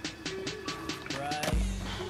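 Music with a quick ticking beat of about five clicks a second, then a heavy bass line comes in about one and a half seconds in.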